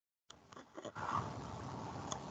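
Dead digital silence that gives way, about a third of a second in, to the background hiss of a newly unmuted microphone on a video call, with a few faint clicks and knocks.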